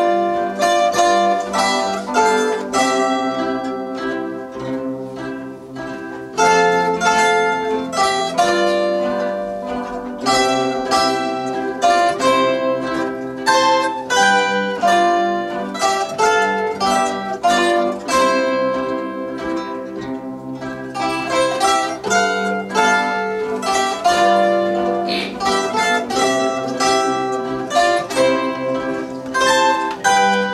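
An ensemble of concert zithers playing a folk tune together, with plucked melody notes ringing over accompanying chords in a steady rhythm. The playing eases off somewhat about six seconds in, then comes back in strongly.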